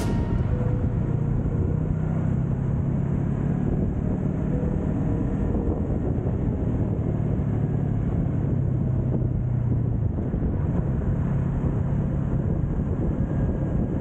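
Yamaha YZF-R3's parallel-twin engine running steadily under way at road speed, with road noise. The engine note changes briefly about ten seconds in.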